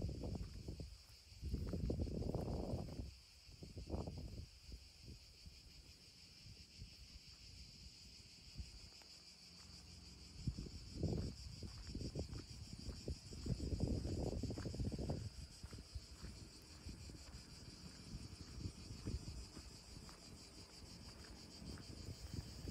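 Steady high-pitched chorus of insects chirring in rural fields at dusk. Over it come several louder low rumbles, about two seconds in, around four seconds, and again from about eleven to fifteen seconds.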